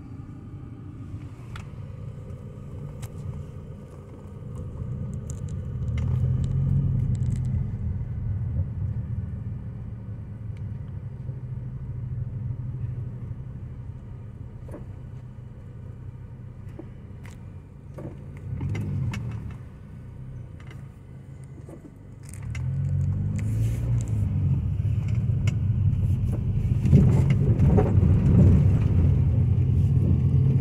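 A car's engine and road noise heard from inside the cabin while driving, swelling as the car pulls away about five seconds in and again from about twenty-two seconds on. Scattered light rattles and clicks come from inside the car.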